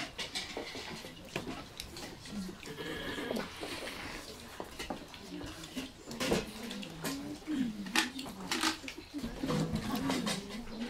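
Bowls, plates and spoons clinking and knocking as a large group eats together, with low murmured voices among them.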